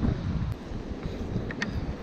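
Wind buffeting the microphone, a low rumble that eases off about half a second in, with a few faint clicks about half a second and a second and a half in.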